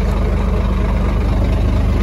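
Heavy truck's diesel engine idling steadily: a loud, even low rumble.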